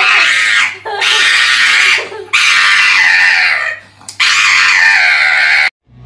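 Four long, loud, high-pitched screams, each lasting about a second or more with short gaps between them; the last breaks off abruptly near the end.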